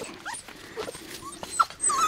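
Eight-week-old puppies playing and giving several short, high-pitched whimpers, some rising and some falling in pitch.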